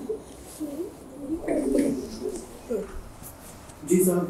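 Low, wavering cooing calls of a bird, several in a row, the longest about a second and a half in.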